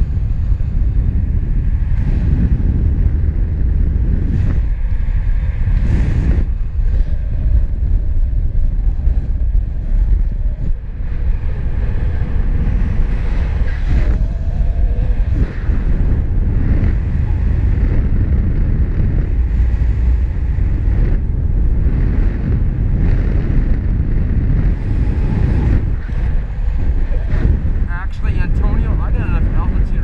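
Airflow buffeting a GoPro microphone in paraglider flight: a loud, steady low rumble of wind noise with small surges.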